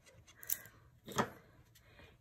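Two brief handling sounds of cardstock and a small plastic liquid-glue bottle on a craft mat, about half a second and a second in, the second louder.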